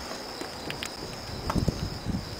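Light clicks and low knocks of hands working a copper coil on a wooden winding jig as the magnet wire is cut with a razor blade, with the handling heaviest in the second half. A steady high cricket chirr runs underneath.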